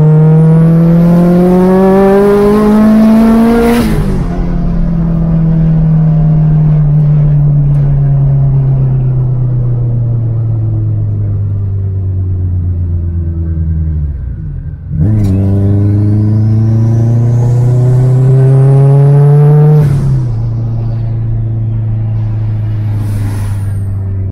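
Turbocharged Honda Prelude engine heard from inside the cabin, pulling hard with rising pitch, then easing off and winding down slowly. After a brief break about fifteen seconds in, it pulls hard again with a high whistle rising over it, then drops back to a steady cruise for the last few seconds.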